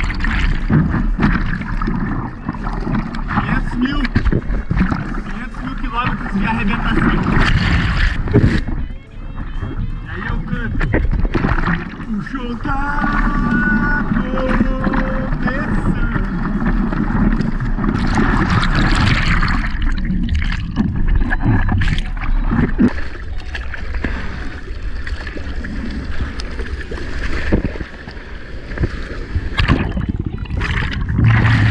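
Churning surf and splashing water over an action camera at the waterline, turning muffled and gurgling when the camera is dunked under the whitewater. A short voiced sound from the surfer comes about halfway through.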